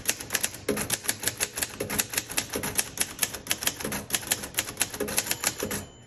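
Typing on a 1950 Royal Quiet Deluxe manual typewriter: a rapid, even run of typebar strikes on the platen, several a second.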